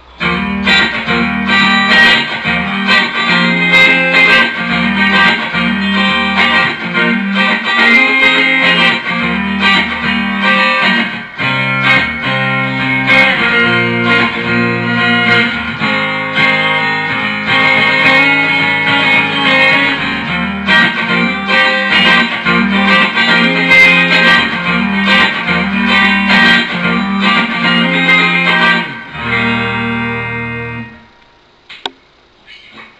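Stratocaster-style electric guitar with ceramic single-coil pickups played over a backing of bass notes and regular percussive hits. The music starts abruptly and falls away near the end.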